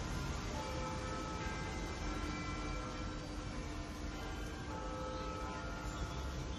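Soft, sparse piano notes held and overlapping over a steady low rumble, as a jazz tune opens quietly.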